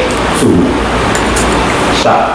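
A man lecturing in Mandarin, with a few words about half a second in, over a loud, steady background of low rumble and hiss that runs under the whole recording.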